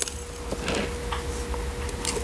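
Gritty potting mix with slow-release fertilizer granules poured from a plastic scoop into a glazed pot: a soft trickling hiss with a few small ticks of grit.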